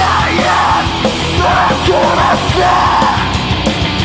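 Live heavy rock band playing at full volume: shouted vocals over distorted electric guitars, bass and a drum kit.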